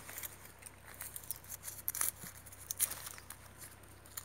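Faint, irregular small clicks and rustles of hands pulling and tying grafting string around a sapodilla branch, with leaves brushing.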